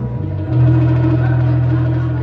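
Live improvised music from a saxophone, percussion and bass trio, with a low note held steady from about half a second in.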